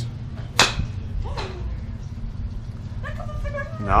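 Golf club striking a ball off a driving-range hitting mat: one sharp crack about half a second in, a clean hit that gets the ball airborne.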